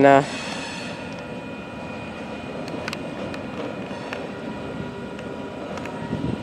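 A freight train of covered hopper cars rolling away down the line: a steady rumble with faint steady tones and a few light clicks.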